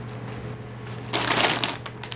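A foil snack bag crinkling as it is picked up and handled: a dense, crackly rustle that starts about a second in and lasts under a second.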